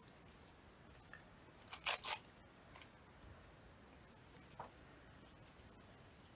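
Paper doily rustling as it is handled and torn, with two short crisp rustles about two seconds in and a couple of fainter ones later.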